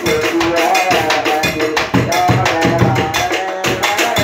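Bedug drum and other percussion beaten in a fast, steady rhythm, with a wavering melody sung through a horn loudspeaker over it.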